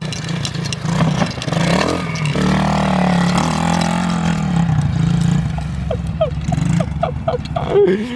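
Small mini dirt bike engine revving as a child rides it at speed. The pitch climbs over the first couple of seconds, holds high and steady through the middle, then eases off near the end.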